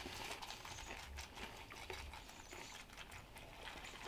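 Milk poured from a carton onto breakfast cereal in a bowl, faint, with a light patter of small ticks.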